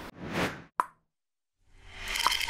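Edited-in transition sound effects: a short whoosh that swells and fades, then a single sharp pop just under a second in. A new sound fades in near the end.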